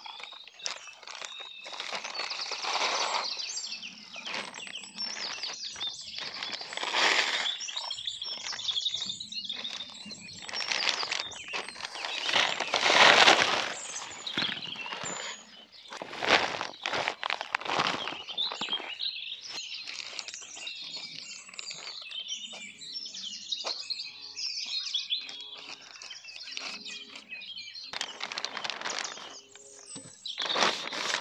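Wood chip mulch tipped from a wheelbarrow and spread by hand over black plastic sheeting: repeated rustling and scraping of chips and plastic, loudest about halfway through. Birds chirp in the background throughout.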